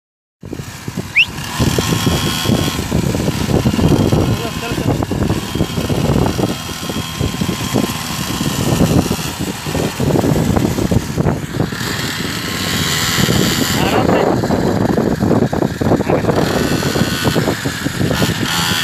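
A 49cc petrol mini dirt bike engine running as the bike is ridden along, with people's voices over it.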